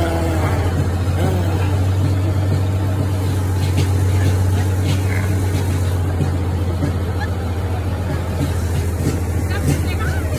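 Steady low engine drone from the parade float the riders are on, running at a slow crawl. A voice is heard briefly near the start.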